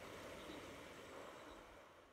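Near silence: a faint, even background hiss that slowly fades out toward the end.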